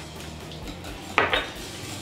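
Wire whisk beating a liquid egg mixture in a glass bowl, with two quick sharp clinks of the whisk against the glass a little over halfway through.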